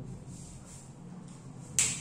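A single sharp click near the end, over faint room noise.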